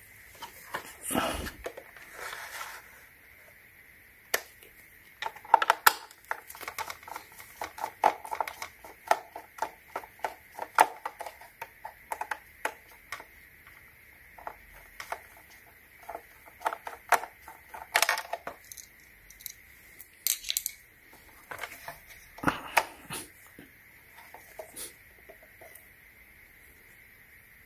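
Plastic parts of a handheld vacuum clicking and knocking as its unscrewed front housing is twisted and worked loose by hand. Many irregular sharp clicks come in uneven clusters.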